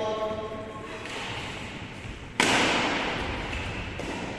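A single loud, sharp impact about two and a half seconds in, dying away with the echo of a large hall, after faint voices in the first second.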